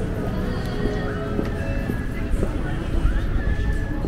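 Busy shopping-street ambience: music playing, people's voices in the background, and a few short sliding high-pitched calls.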